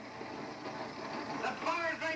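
A man's voice starts speaking about one and a half seconds in, over a steady noise. It is a TV soundtrack picked up from the set's speaker.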